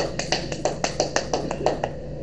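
Quick, even hand clapping, about six claps a second, right after a gospel song ends.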